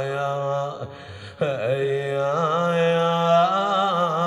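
A man chanting an Arabic elegy in a slow, ornamented melody of long, wavering held notes. He breaks off briefly for a breath about a second in, then goes on.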